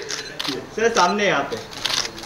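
A few sharp camera shutter clicks from photographers' cameras, under a man's voice calling out.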